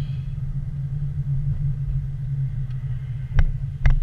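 Road and engine noise heard inside a car driving on a wet road: a steady low rumble. Near the end come two sharp ticks.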